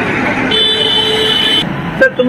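Loud street traffic noise, with a vehicle horn sounding steadily for about a second in the middle.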